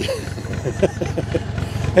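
Narrowboat's diesel engine idling steadily, with short voice fragments over it.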